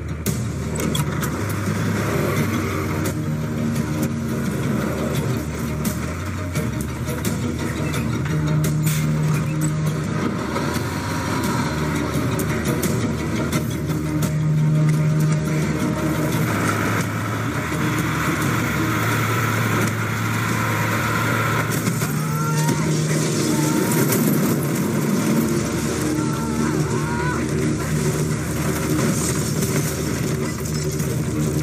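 Film soundtrack: background music with long held low notes over the continuous sound of a motor vehicle running.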